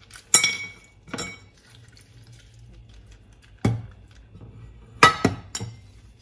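Kitchenware clinking and knocking: about half a dozen sharp, ringing clinks of hard items against plastic, glass and ceramic containers, three of them in quick succession near the end, with faint water sloshing, as peeled bitter kola nuts are washed in a plastic jug.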